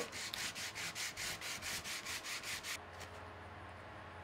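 Sandpaper rubbed quickly back and forth by hand along a coated cabinet face frame, about five strokes a second, stopping about three-quarters of the way through. The sanding scuffs the factory coating so the glue will bond.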